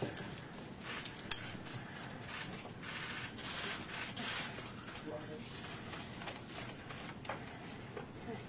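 Quiet handling noise as a thin covering sheet is lifted off the top of an open copper box: a few small clicks and clinks, with a sharper click about a second in, and soft rustling through the middle.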